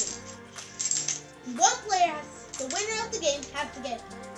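Plastic Connect 4 counters clicking and clattering against each other and the tabletop in a few sharp ticks, under music and children's voices.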